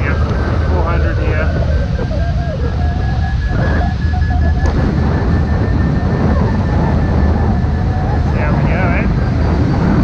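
Wind rushing over the microphone of a hang glider in flight, a loud, steady low rush. A faint high pulsing tone runs through it, and a few short muffled snatches of voice come and go.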